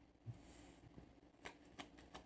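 Faint handling of a deck of reading cards: a soft tap about a quarter second in as a card is laid on the table, then a couple of light card flicks in the second half.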